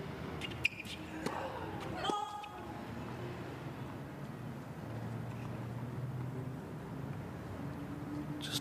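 Tennis first serve: one sharp racket-on-ball strike about half a second in, then a short voice call about two seconds later as the serve goes out as a fault, over low crowd murmur.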